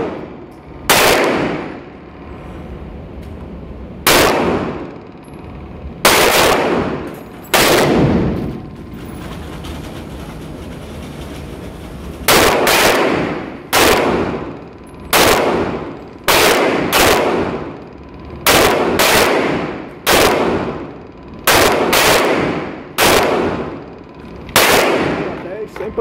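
Taurus PT111 G2 9mm pistol firing about twenty shots, each ringing out with a reverberant tail in an enclosed range booth. Four shots come slowly, then after a pause of about four seconds a quicker string runs at roughly one shot every 0.7 s. The pistol cycles without a stoppage.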